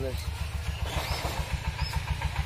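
A small engine idling nearby, a steady, evenly repeating low throb, with voices faintly in the background.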